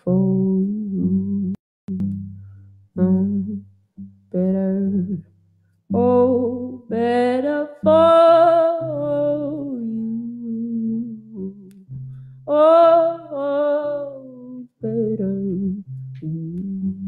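A woman singing slow phrases with long, wavering held notes, accompanied by her own hollow-body electric guitar played through an amplifier.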